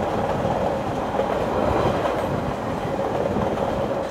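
Train running along the track, heard from inside the carriage: a steady rumble of wheels on rail.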